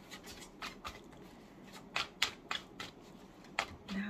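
A deck of tarot cards being shuffled by hand, overhand: a string of soft, irregular flicks and slaps of card against card, with a few sharper ones about halfway through and near the end.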